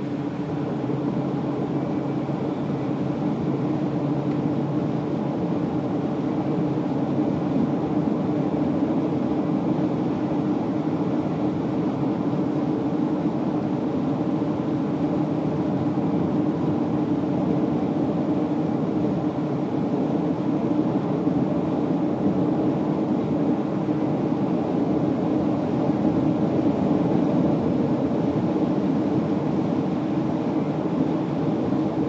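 Steady engine drone and road noise of a car driving at an even speed, getting a little louder over the first several seconds.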